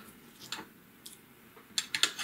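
Quiet handling of small plastic mouse parts: a light click about half a second in and a few quick clicks near the end.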